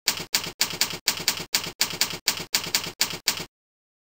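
Keyboard typing: a run of about fourteen even keystrokes, about four a second, as a search term is typed. It stops abruptly about three and a half seconds in.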